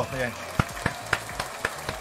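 A man's word trails off at the start, then low crackling with a handful of scattered sharp clicks.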